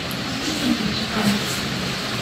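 A steady background rumble with faint, low voices underneath.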